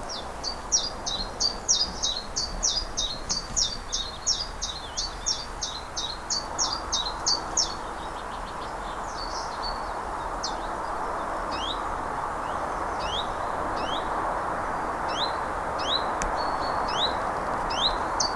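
Small songbird singing outdoors: a fast run of high chirps, about three a second, for the first seven seconds or so, then sparser single rising notes. Under it runs a steady rushing noise that grows louder in the second half.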